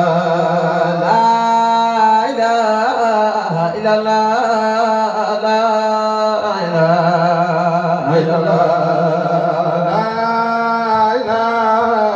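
Men chanting a Sufi zikr into handheld microphones: a lead voice sings long, wavering melodic phrases over a steady low held note.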